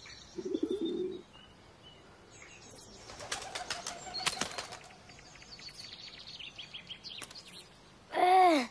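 A bird's wings flapping in a short flutter about half a second in, followed later by a run of sharp clicks and a quick series of high bird chirps near the end.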